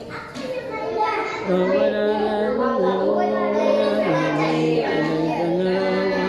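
A man's voice reciting the Quran in Arabic, chanted in long held melodic notes that step up and down in pitch. It breaks off briefly at the start, then resumes.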